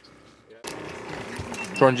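A steady mechanical hum with a fixed pitch, after about half a second of near quiet at the start; a man starts speaking near the end.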